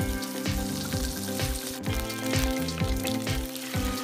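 Curry leaves, dried red chillies and seeds sizzling in hot oil in a pan as a tempering, under background music with held notes and a steady beat.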